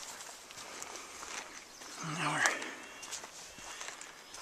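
Footsteps of a person walking on a dirt forest trail, faint scattered scuffs and ticks.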